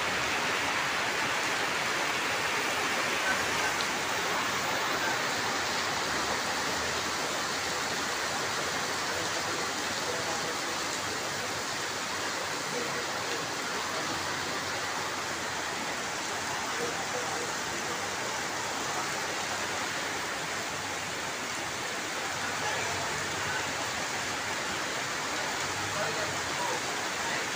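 Heavy downpour: a steady, even rush of rain on the flooded pavement and on the tarpaulin canopies overhead, with water streaming off the canopy edges.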